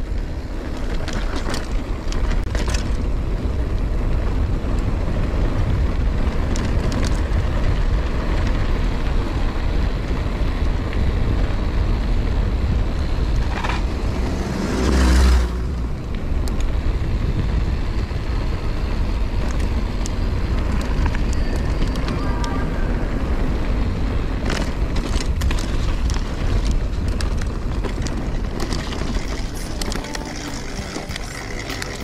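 Wind rumbling on the microphone and tyre noise as a mountain bike rolls over a rough concrete and gravel road, with scattered clicks and rattles from the bike over bumps. About halfway through there is a brief louder burst with a pitched tone.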